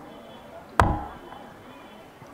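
A single sharp knock with a short deep thud behind it, a little under a second in, over a low background.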